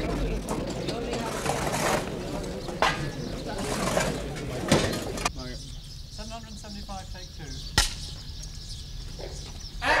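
Film clapperboard snapped shut once with a single sharp clap, about three-quarters of the way through, just after the take number is called out. Before the clap there is a busy hubbub of voices, which cuts to a quieter background about halfway through.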